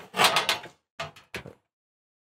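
A Suburban SDS2 drop-in cooktop with a glass lid being handled and lifted in its countertop cutout. There is a short scrape, then a few light clicks and knocks about a second in.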